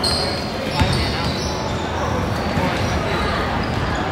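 A basketball bouncing on a hardwood gym floor, with a couple of sharp thumps about a second in, over voices echoing in the hall.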